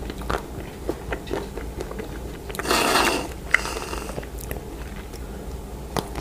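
Close-up mouth sounds of a strawberry dipped in crisp blue-coloured white chocolate: scattered crunchy bites and chewing clicks. A little over two and a half seconds in comes a short hiss of whipped cream sprayed from an aerosol can, trailing off about a second later.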